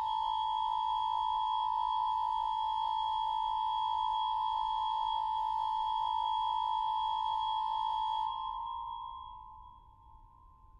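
Pipe organ holding a high, sustained chord with a pure, flute-like tone; about eight seconds in the upper notes release and the remaining note fades away.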